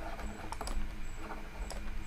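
Faint, irregular light clicks and taps of a stylus on a pen tablet while handwriting is written, over a low steady hum.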